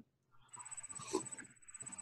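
Faint sipping from a mug, breathy and choppy, coming in about half a second in after dead silence on the call line.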